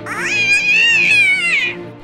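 A dinosaur cry sound effect: one high-pitched, wavering call lasting about a second and a half, rising at the start and falling away at the end, with background music under it.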